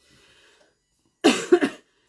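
A person coughing: two quick, loud coughs close together, just past the middle.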